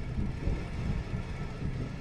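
Low, uneven rumble of wind buffeting the microphone while riding a bicycle along a paved path.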